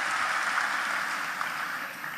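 Audience applause, an even patter of many hands clapping that dies away.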